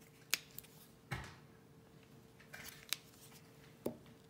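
A few light, sharp clicks and a soft knock, spread out over several seconds, from acrylic craft paint bottles and brushes being handled, over a faint steady hum.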